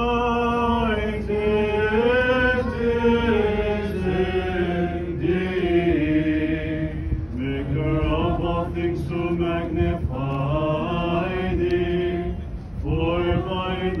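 A group of voices singing Orthodox Byzantine chant in unison: a slow hymn melody of long held notes that glide from pitch to pitch, with brief breaths between phrases.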